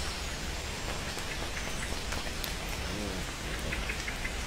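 Steady rain falling, an even hiss with scattered individual drops ticking.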